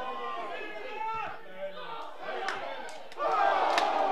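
Shouting voices at a football match, several people calling out over one another, rising suddenly into louder yelling about three seconds in as the attack reaches the goalmouth.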